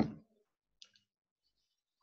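Near silence with one faint, short click just under a second in.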